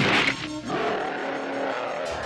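A cartoon monster's roar, loud at the start and falling in pitch over about half a second, over dramatic background music that carries on through the rest.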